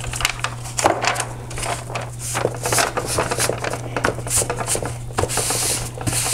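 Brown kraft paper crinkling and rustling in irregular crackles and scratches as gloved hands smooth it down onto glued cardboard, over a steady low hum.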